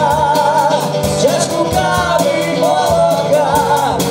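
Live band playing a song: a man and a woman singing together over a drum kit keeping a steady beat and a strummed acoustic guitar.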